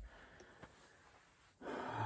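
Near silence with faint outdoor hiss, then a man's drawn-out hesitation "uh" starting about one and a half seconds in.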